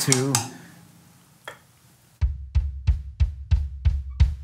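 Bass drum of a PDP kit played with a foot pedal: about two seconds in, six even strokes start, about three a second, each a deep thud with a sharp beater click. The leg's weight is simply dropped onto the pedal board, so the beater bounces off the head freely.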